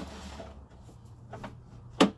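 Sewer inspection camera equipment with a steady low hum, and a few short knocks as the camera's push cable is worked in the drain line, one near the middle and a sharper one at the end.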